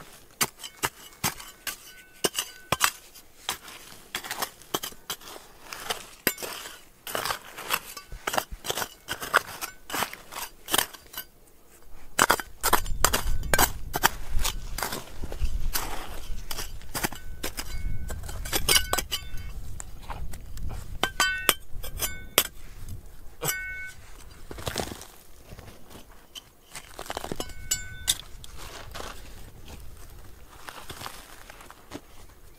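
Digging in rocky ground with a steel hand trowel and bare hands: many sharp clicks and knocks of stones and gravel, some trowel strikes on rock ringing briefly. A low rumble runs through the middle part.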